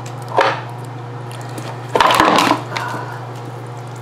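A tegu tearing at a thawed rat and dragging it out of a plastic food bowl onto tile. The crunching and scraping come in two short bursts, a small one about half a second in and a louder one about two seconds in, over a steady low hum.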